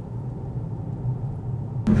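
Opel Insignia on the move, heard from inside the cabin: a steady low rumble of engine and road. Near the end a sudden click is followed by a jump to louder sound.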